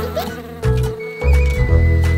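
Cartoon buzzing-insect sound effect, like a flying bee, over instrumental music with a steady bass.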